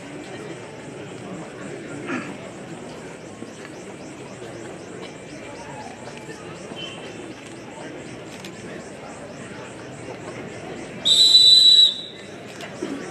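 Steady chatter from a large crowd, then near the end one loud whistle blast of about a second, the referee's whistle starting the wrestling bout.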